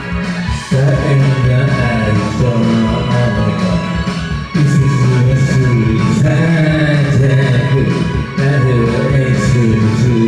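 Karaoke backing track of a band song with a man singing the melody into a microphone, in phrases with two short breaks, about halfway and near the end.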